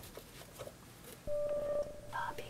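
A single steady electronic beep, one pitched tone about half a second long, begins just past the middle after a faint, quiet start.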